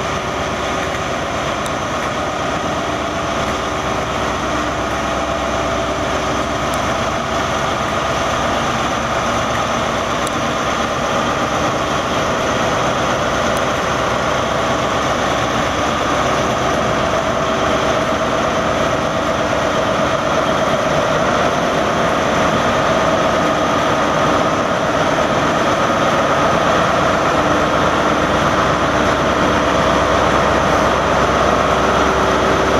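Diesel engine of a Class 43 HST power car running steadily as the train moves slowly through the station, its sound growing gradually louder.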